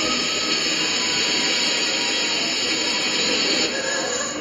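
Steady radio static hiss played over the PA, the radio-tuning noise of the song's intro.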